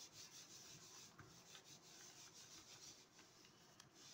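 Faint, soft rustling of hands rubbing a sheet of paper pressed onto a paint-covered silicone craft mat, many short strokes in a row, pulling a mono print off the mat.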